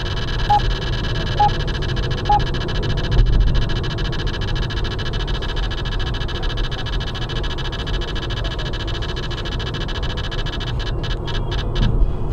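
Steady road and engine noise inside a car cruising at motorway speed: a low rumble with a faint high steady hum. Three short beeps, about a second apart, come in the first few seconds.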